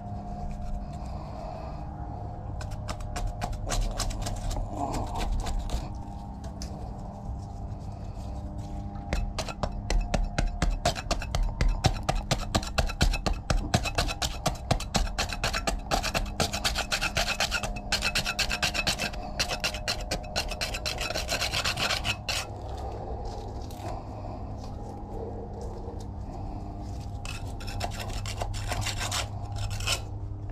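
Flat metal scraper rasping along a cracked concrete parapet in quick repeated strokes, scraping off the old grey waterproof coating. The strokes start a couple of seconds in, come thickest through the middle and stop just before the end.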